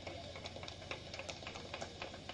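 Faint background in a pause between spoken sentences: a low steady hum, typical of mains hum through a PA system, with scattered faint clicks.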